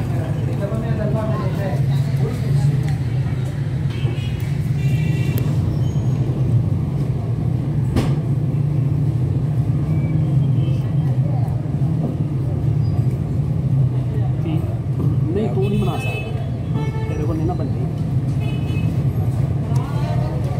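Busy street ambience: a steady low hum of engine traffic with indistinct voices in the background, and a single sharp click about eight seconds in.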